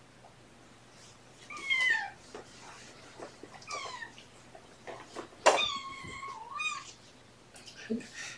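A kitten meowing four times in protest while its claws are being trimmed. The high calls fall in pitch, and the third is the loudest and longest, with a wavering end.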